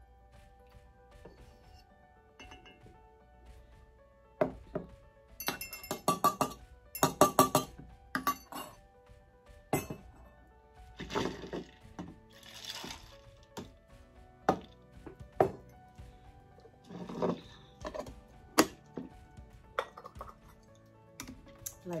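Glassware clinking and knocking in a quick run of sharp clinks about four to nine seconds in, then brewed hibiscus tea poured from a glass jug into a glass, with a few more knocks of glasses set down, over faint background music.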